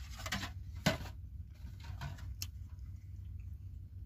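Aluminium foil food tray being handled, with a few light crinkles and sharp clicks, alongside quiet chewing, over a steady low hum.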